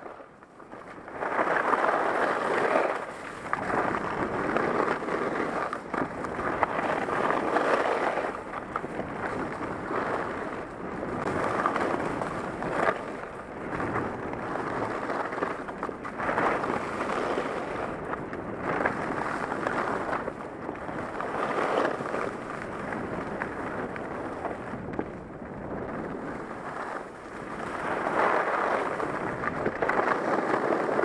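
Skiing downhill: ski edges scraping and carving on groomed snow, with wind on the helmet-mounted microphone. The noise swells and fades every few seconds as each turn is made.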